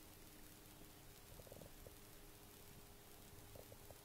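Near silence: faint room tone with a low steady hum and two brief clusters of soft ticks.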